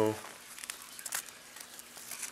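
Crinkling and rustling as cotton balls are pushed by hand into a cut-open Pringles can, with a few sharp crackles along the way.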